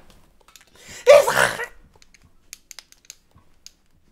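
A short, loud vocal outburst from the man at the microphone, a laugh or exclamation, about a second in, followed by a few faint clicks.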